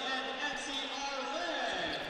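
Indistinct voices and chatter from people in a gymnasium, a steady murmur with faint words rising out of it.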